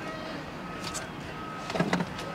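Quiet, steady low hum inside a parked car's cabin, with a faint thin steady tone, then a short voice-like sound near the end.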